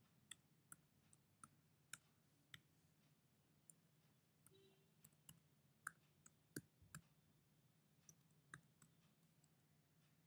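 Faint keystrokes on a computer keyboard: sharp, irregularly spaced key clicks while a line of code is typed.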